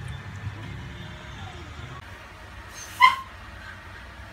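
A baby macaque gives one short, high-pitched squeak about three seconds in.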